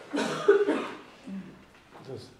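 A person coughing: a couple of short, harsh bursts in the first second.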